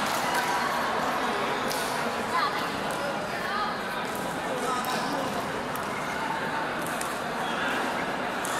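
Indistinct voices of players and onlookers echoing in an indoor sports hall, with a few sharp taps from play on the court, the loudest about two and a half seconds in.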